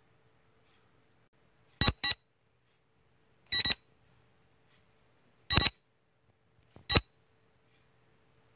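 Quiz countdown-timer sound effect: short electronic beeps, mostly in quick pairs, starting about two seconds in and coming roughly every one and a half to two seconds, with silence between.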